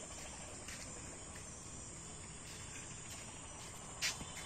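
Crickets trilling steadily, one constant high-pitched note over low background noise, with a few faint clicks.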